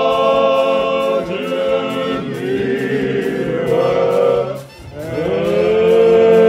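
Men's voices singing a cappella in long held notes. There is a brief break about five seconds in, then a new note swoops up and holds.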